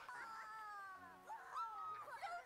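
Faint, high-pitched, whine-like sliding tones from the audio of a cartoon episode playing in the background. The pitch falls slowly at first, breaks into short glides about a second in, then holds steady near the end.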